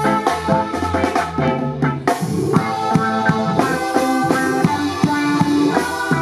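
Street band playing upbeat music, with a drum kit keeping a steady beat under guitar, keyboard and brass.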